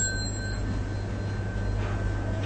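A small Buddhist ritual bell struck once, its high clear ring held on over a low steady hum; it signals the bow to the Buddha image.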